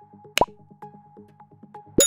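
Electronic background music with a quick repeating plucked pattern, overlaid with animation sound effects: a single sharp pop about half a second in, then a click with a ringing bell-like chime right at the end.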